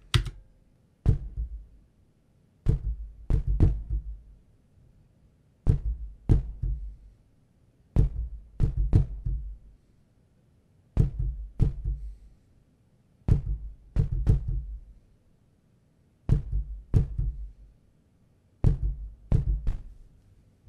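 Synthesized kick drum from the Retrologue subtractive synth, played as a beat from a keyboard: about twenty short, low hits, each with a sharp click at the start, falling in groups of one to three with short gaps between.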